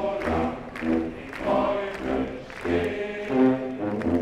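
Military band music: a group of voices singing in chorus over the band's accompaniment, with a regular low bass beat.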